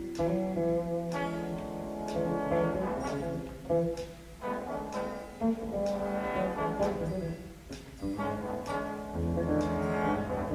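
Big band jazz ensemble playing, its brass section sounding full chords in phrases punctuated by sharp accents.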